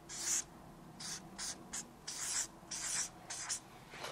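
Marker pen writing on flip-chart paper: a string of short scratchy strokes, about two a second, as a word is written letter by letter.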